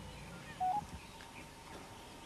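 A brief electronic beep of two steady notes, the second slightly higher, a little over half a second in. It sits over a faint outdoor background with small bird chirps.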